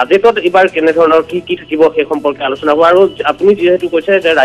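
Speech only: a man talking continuously over a telephone line, his voice thin and narrow.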